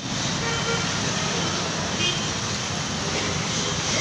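Steady background noise with faint, indistinct voices in it now and then.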